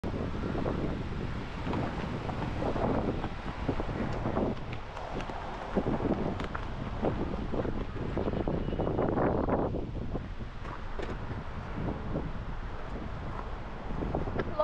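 Wind buffeting the microphone: a rough, rumbling noise that swells and falls in uneven gusts, with a few faint clicks.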